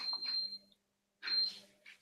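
Faint, broken-up audio on a video call as the remote caller's connection drops. There are two short stretches of garbled sound, each with a thin high tone over a low hum, with silence between them.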